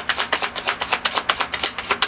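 A deck of tarot cards being shuffled by hand, the cards slapping against one another in a fast, even run of about ten clicks a second.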